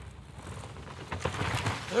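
Downhill mountain bike coming down a wet dirt track and passing close by: a building rush of tyres sliding over the slippery dirt, with a few knocks from the bike, loudest just before it goes past.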